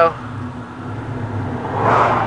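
Dodge Dakota pickup engine running on wood gas at low throttle, near idle, heard from inside the cab as a steady low drone. There is a brief swell of noise near the end.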